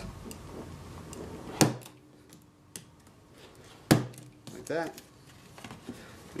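A knife cutting through a Kydex thermoplastic sheet by hand. There are two sharp clicks, about a second and a half in and about four seconds in, with fainter scrapes and clicks between them.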